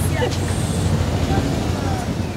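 Steady low rumble of outdoor background noise, with the tail of a woman's word at the very start.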